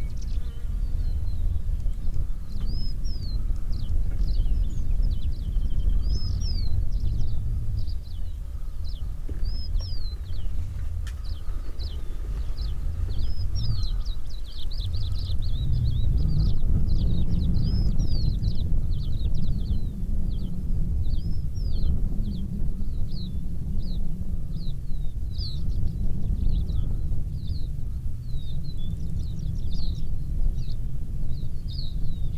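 Wild birds calling with many short, high chirps and whistles, repeating all the way through, over a steady low rumble that swells for a few seconds in the middle.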